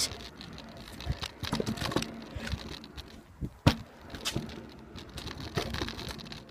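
Handling noise from a hand-held phone camera being carried while walking: scattered clicks, knocks and rustles, with one sharp knock a little past halfway.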